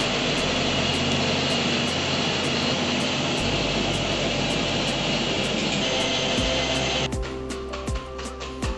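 A loud, steady rushing noise over background music, cutting off suddenly about seven seconds in, after which the music with a steady beat carries on alone.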